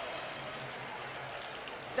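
Steady, even wash of stadium background noise from the match broadcast, with a faint low hum underneath.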